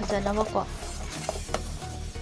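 Thick gram-flour batter being stirred in a stainless steel bowl, a wet, noisy mixing sound with a sharp click about a second and a half in. A woman's voice speaks briefly at the start.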